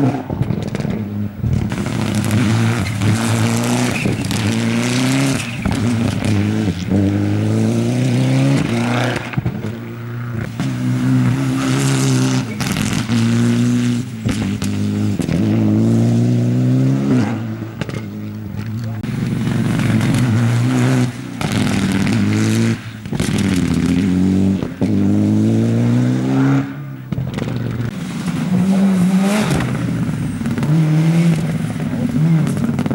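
Turbocharged four-cylinder rally cars, Mitsubishi Lancer Evolutions among them, driven flat out along a dirt stage. The engines rev up through the gears again and again, with the pitch dropping back at each shift and the sound easing between cars.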